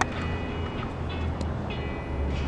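A single sharp crack of a baseball impact at the start during infield practice, followed by a couple of fainter knocks, over a steady low outdoor rumble.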